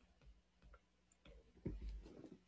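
Faint ticks of a stylus tip tapping and sliding on an iPad's glass screen while handwriting, with a louder, dull low thump near the end.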